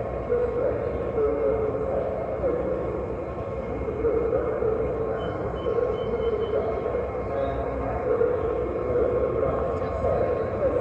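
O gauge model passenger train running along the track: a steady rumble of wheels and motor, with indistinct voices in the background.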